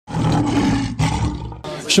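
Loud, noisy intro sound effect for a glitch-style logo animation. It comes in two bursts broken about a second in, with a short hiss near the end.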